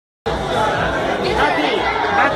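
Many people talking at once: dense, overlapping party chatter in a crowded room.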